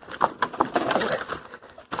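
Lowered small motorcycle rolling over a slatted grate and rough dirt trail, its frame and parts rattling with a run of irregular knocks.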